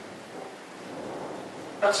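Steady hiss of background room noise during a pause in speech; a man's voice starts just before the end.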